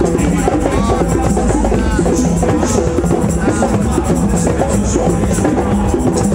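Several drums played together by a percussion group in a dense, continuous rhythm.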